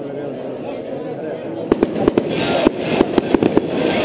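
Murmur of a large outdoor crowd, then about two seconds in a string of firecrackers starts going off: sharp irregular bangs, several a second, over the crowd noise.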